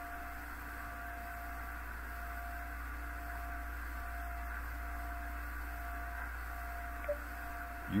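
Steady electrical hum and hiss with a thin constant tone, like the noise floor of a radio or audio line, with a faint short blip about seven seconds in.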